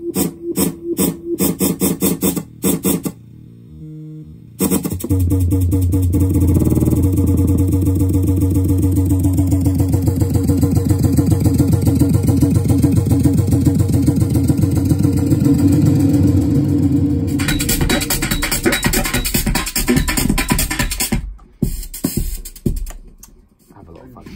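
Electronic music played live from a synthesizer and looper rig through a mixer. It opens as a chopped, stuttering loop, drops out briefly a few seconds in, then comes back as a dense, pulsing, bass-heavy loop that turns noisier past the middle and cuts in and out near the end.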